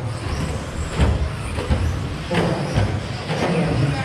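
1/10-scale electric RC stadium trucks with 13.5-turn brushless motors racing on an indoor track: a steady mix of motor whine and tyre noise, with a few sharp knocks, about one, two and a half and three and a half seconds in, from trucks striking the jumps and track boards.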